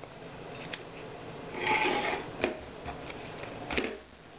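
A stack of paper pages being handled and clamped: a short scraping rustle of paper and cardboard partway through, and a few sharp clicks from the metal binder clips.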